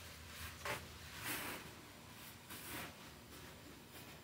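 A few faint, short rustles of a leather-and-suede handbag and the things inside it being handled and moved about.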